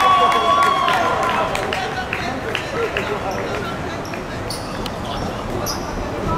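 Footballers shouting just after a goal, with one long held call in the first second, then short thuds of the ball and feet on a hard pitch scattered through the rest.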